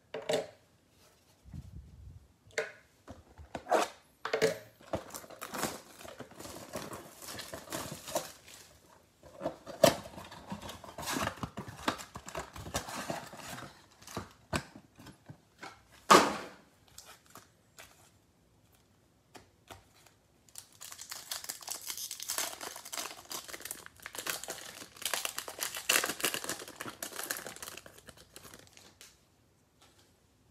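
A trading-card mega box being opened: cardboard handled with a run of sharp knocks and snaps through the first half, loudest twice. In the last third comes a long crinkling tear of a card-pack wrapper being ripped open.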